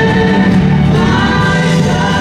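Live gospel song: a woman singing long held notes into a microphone over a choir and accompaniment, her pitch stepping up about a second in.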